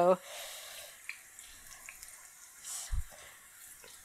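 Eggplant slices deep-frying in hot vegetable oil in a frying pan: a quiet, steady sizzle of bubbling oil. A soft low thump sounds about three seconds in.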